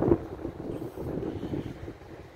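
Wind rumbling on the microphone outdoors, a low, even noise that fades toward the end.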